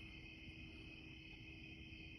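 Near silence with the faint, steady trill of crickets in the background.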